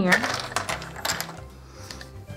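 Small wooden game pieces clicking and clattering against each other and the table as they are tipped out of a cardboard pot, the clicks bunched in the first second and thinning out after.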